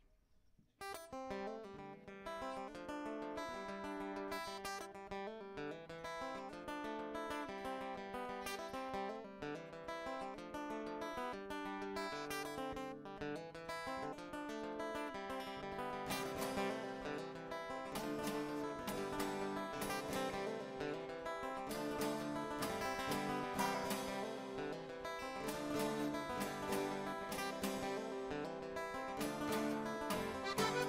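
Live acoustic guitar playing a plucked tune, starting about a second in, the music growing fuller about halfway through.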